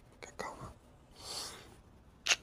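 Faint close-microphone breathing and whisper-like breaths from a man, with a few soft clicks in the first half and one longer breathy exhale past the middle.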